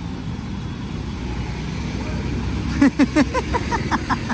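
Street traffic noise: a steady low rumble of road vehicles, with a man's voice breaking in about three seconds in.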